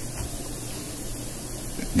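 Steady background hiss with a faint low hum: room tone and recording noise in a pause between phrases, with no distinct sound event.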